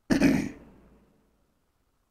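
A man clearing his throat once, briefly, just at the start.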